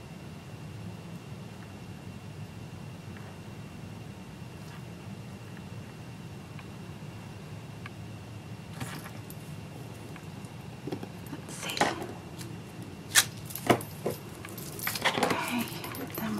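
Steady low room hum while a clear acrylic stamp block is held pressed on card stock. In the second half come a string of sharp clicks and knocks as the block is handled, lifted off and set down on the craft mat.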